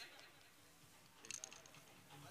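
Near silence: faint voices in the distance, with a brief cluster of sharp clicks about one and a half seconds in.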